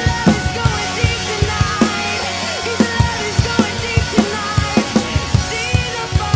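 An acoustic drum kit played live along to a rock worship band recording: kick, snare and cymbals in a steady groove. The strikes thin out briefly about two seconds in, then pick up again.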